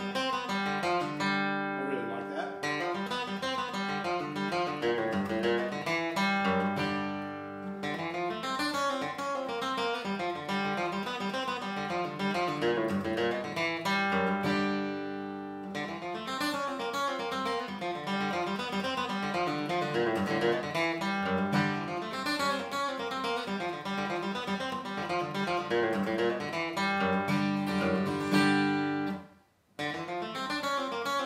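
Steel-string dreadnought acoustic guitar flatpicked, playing a bluegrass single-note lick. The run breaks twice to let notes ring and decay, about seven and fifteen seconds in. The playing cuts off sharply just before the end.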